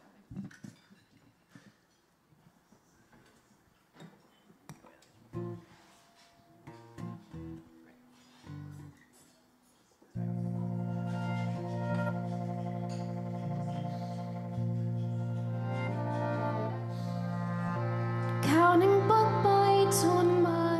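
A hushed pause broken by a few short, isolated instrument notes. About halfway through, a band's song intro starts abruptly with sustained low notes under acoustic guitar picking. A woman's singing voice comes in near the end.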